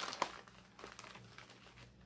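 Plastic snack pouches crinkling as they are handled, a little louder in the first half-second and then faint.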